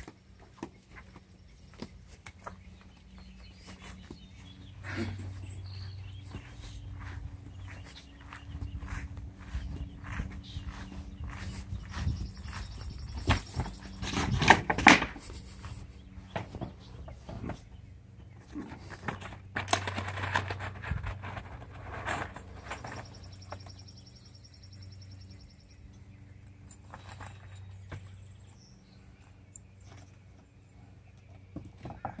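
Scattered knocks and clatter of cedar siding boards being handled and set against a house wall, the loudest knocks about halfway through.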